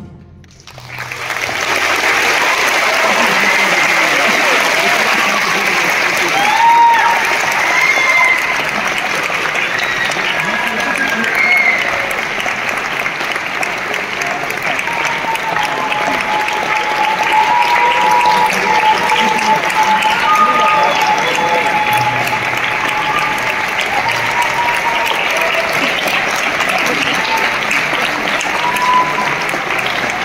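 Audience applauding with steady clapping and scattered cheers, starting about a second in as the band's final chord dies away.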